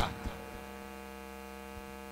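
Steady electrical mains hum from a microphone and sound system: a low, even buzz with a row of overtones that holds unchanged throughout.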